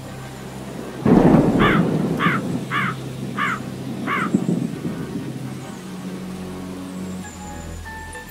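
Cartoon thunderstorm sound effect: a thunderclap about a second in, rumbling away over steady rain. A crow caws five times in quick succession over the storm.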